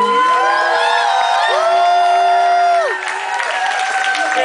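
Several voices holding long sung notes together in harmony, gliding in and out of them, over a crowd cheering.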